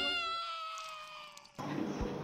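A high-pitched, squeaky cartoon voice holds one long note that slides slowly down in pitch and fades out. About one and a half seconds in, it cuts suddenly to a low background hum.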